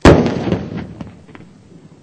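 Controlled demolition of four 57 mm anti-aircraft shells: one loud blast right at the start, its rumble dying away over about a second and a half, with a couple of small cracks as it fades.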